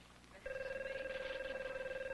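Office desk telephone ringing: one steady, trilling ring that starts about half a second in and lasts about a second and a half.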